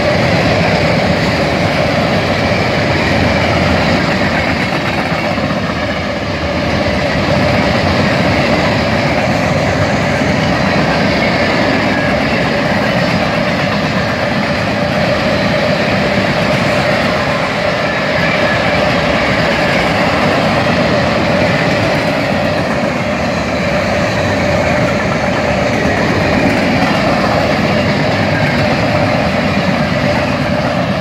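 Freight cars of a long train rolling past at track speed: a steady rumble and rail noise from the wheels, with a steady tone running through it.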